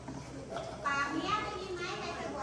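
Children's voices talking and calling out over one another, with a high child's voice standing out about a second in.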